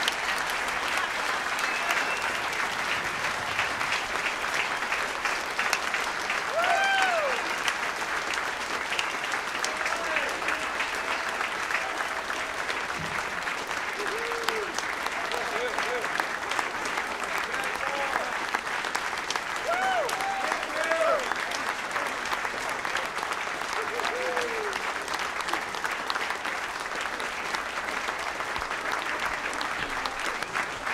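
Audience applauding steadily and warmly, with scattered voices calling out and whooping above the clapping.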